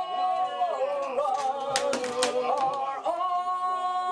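A small group of voices singing together in drawn-out, wavering notes, settling into one long held note about three seconds in.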